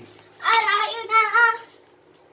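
A high-pitched voice sings a short wordless phrase of about a second, starting about half a second in.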